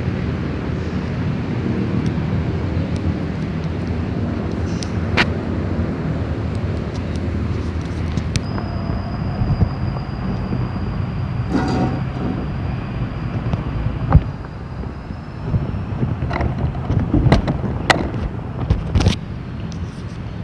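Steady low outdoor rumble, with scattered sharp clicks and knocks and a faint thin high whine for several seconds in the middle.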